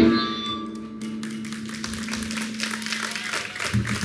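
A live punk rock song ends: the last loud chord cuts off at the start and a single low note rings on. From about a second in, the audience starts clapping.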